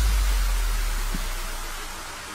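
A wash of hiss-like noise in a DJ mix between tracks, fading steadily as the previous track's bass dies away.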